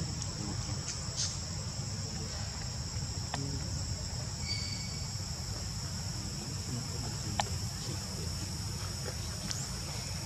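A steady, high-pitched insect chorus, with a low rumble underneath. A few faint clicks and a brief thin whistle-like tone come about halfway through.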